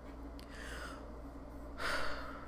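A woman's breathing: a soft breath about half a second in, then a louder, sharp intake of breath near the end, over a low steady hum.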